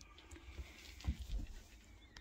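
Handling noise from a hand-held camera being moved through a small boat cabin: faint rustling with a few soft low thumps, the loudest about a second in.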